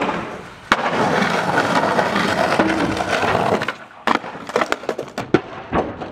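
Skateboard dropped off a trailer roof: a sharp clack as it lands on asphalt, then its wheels rolling for about three seconds, followed by a run of separate sharp clacks near the end.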